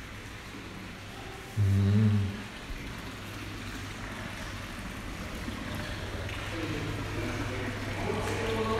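Indoor room tone with a steady low hum. About one and a half seconds in there is one short, low, pitched sound like a person's voice, and faint voices murmur near the end.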